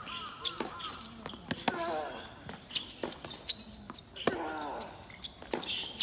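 A tennis ball bounced on a hard court, sharp knocks about once a second, with crows cawing in between.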